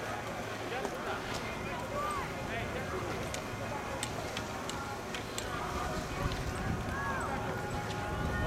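Background chatter of many people, faint scattered voices with no clear words, over a steady low hum, with several sharp light clicks scattered through.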